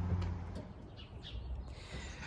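Faint bird chirps, a few short calls about a second in, over a low hum that fades during the first second.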